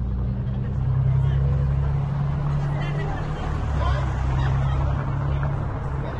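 A car engine running steadily at low revs close by, a deep even hum, with people talking in the background.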